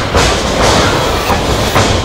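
Steady noise of a crowd and hall at a live wrestling match, with a couple of sharp hits from the ring, one just after the start and one near the end.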